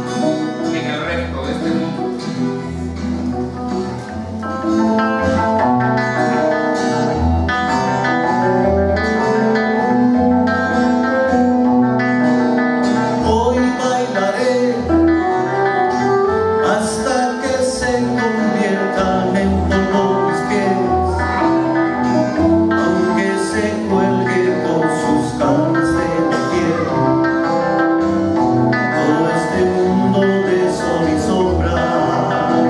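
Live acoustic band of guitars and accordion playing a song, growing louder about four and a half seconds in.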